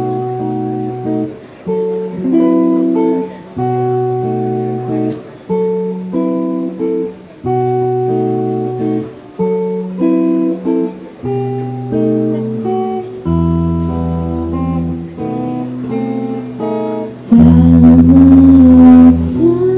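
Clean electric guitar playing an instrumental passage of sustained chords, changing every second or two. Shortly before the end a woman's singing voice comes in loudly over it.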